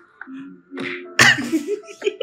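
A person's sudden, loud burst of breath, a sneeze-like outburst, about a second in. A softer breathy sound comes just before it, and quiet music plays underneath.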